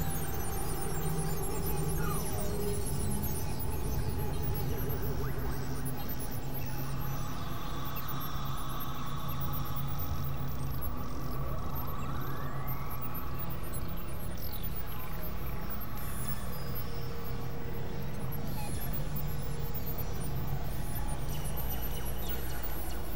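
Experimental synthesizer drone music from a Novation Supernova II and Korg microKorg XL: steady low droning tones with higher sustained tones layered over them, and slow pitch glides sweeping up and then down about halfway through.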